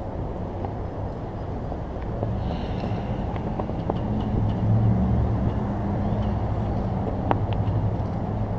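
Low, steady rumble of motor-vehicle traffic and engines from the street, swelling from about two seconds in and loudest around the middle, with one sharp click near the end.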